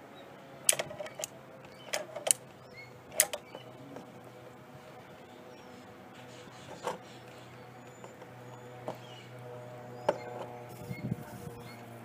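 Sharp metallic clicks and knocks as locking pliers grip and turn a brass ball valve on a backflow preventer, several in quick succession in the first few seconds and a couple more later, over a steady low hum.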